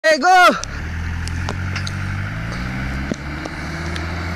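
A vehicle engine running steadily at low revs with a level hum, with a few faint clicks over it.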